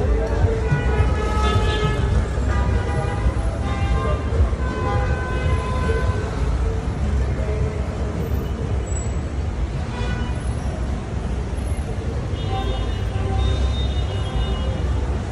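City street traffic: a steady low rumble of passing cars, with short car-horn toots sounding over it, several in the first half and again near the end.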